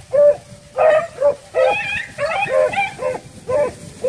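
A pack of rabbit hounds baying as they run a rabbit's scent trail: short, repeated, overlapping howling barks from several dogs, about two or three a second.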